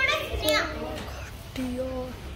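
A child's high-pitched voice calls out in the first half second, and a lower voice follows near the end, over a steady low hum of background noise.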